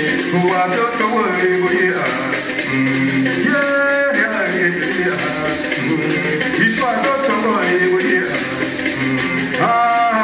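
A man singing to his own accompaniment on a plucked stick zither with a gourd resonator, the strings sounding under the voice as steady music.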